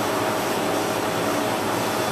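Steady background hum and hiss with one constant mid-pitched tone, unchanging throughout.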